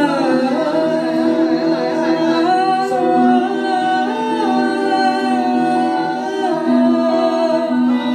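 Live group singing: a lead voice sings a gliding, ornamented melody over a steady drone of held low notes.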